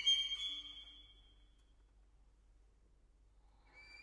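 Violin concerto music: the solo violin's fast rising run ends and rings away within the first second. A faint low note follows. A pause of about two seconds comes next, near silent, before a high held violin note with vibrato enters near the end.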